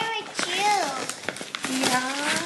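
A child and a woman talking, with a few brief taps and rustles of paper packaging being handled.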